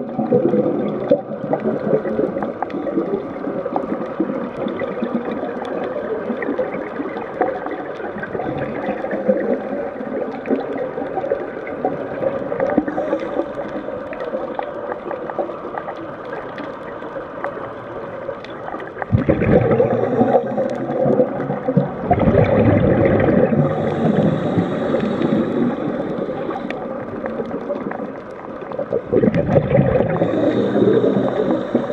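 Underwater noise picked up by a diver's camera: a continuous rush and gurgle of water. Louder bubbling stretches of a few seconds each come about two-thirds of the way in and again near the end, typical of the diver exhaling through a scuba regulator.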